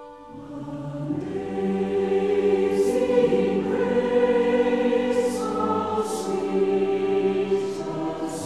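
Background choir music: voices singing long, slow held chords, swelling in over the first second or so.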